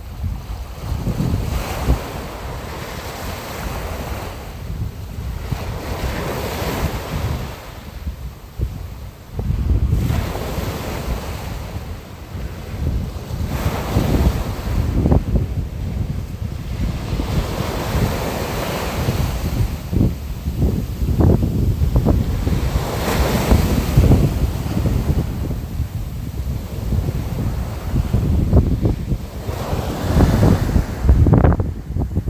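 Wind buffeting the microphone, a rough low rumble under a rushing, surf-like hiss that swells and fades every few seconds.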